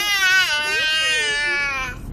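A young child's long, high-pitched cry-like call, held on one note that falls slightly and stops just before the end.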